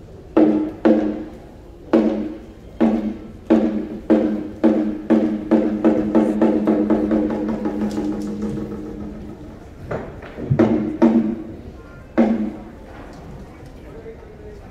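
Ceremonial percussion struck in the traditional accelerating roll: single strikes with a low ringing tone come quicker and quicker until they run together into a roll that dies away, followed by three or four more spaced strikes near the end.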